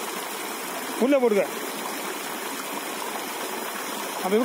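Steady rush of flowing water, with one brief spoken word about a second in.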